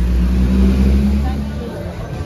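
A motor vehicle's engine running close by in street traffic, a loud low rumble with a steady hum that fades away near the end as it moves off.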